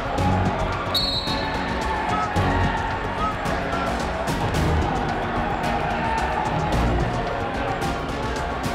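A referee's whistle blows once, short and high, about a second in, starting the wrestling bout. Around it, gym crowd noise with voices, scattered knocks and claps, and music with a low thump about every two seconds.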